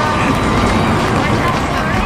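Indistinct chatter of a small group of people talking at once, mixed into a steady, loud background noise with no single clear voice.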